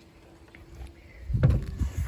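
Wooden rabbit-hutch door being swung shut, with a cluster of low thumps and knocks about one and a half seconds in.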